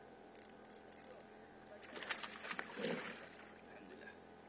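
Fishing tackle handled on a kayak: a few light clicks, then a burst of sharp clicking and rattling about two seconds in, with a short low knock near the end of the burst.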